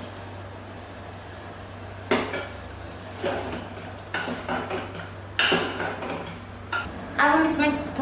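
Steel ladle stirring rajma gravy in a metal pressure cooker: a quiet pour of liquid at first, then several sharp clinks of the ladle against the pot with scraping between them.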